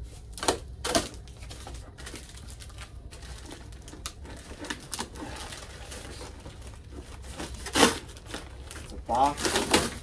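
A cardboard box being opened and unpacked by hand: cardboard flaps and packing rustling and scraping, with a few sharp knocks and clicks, the loudest about three-quarters of the way through.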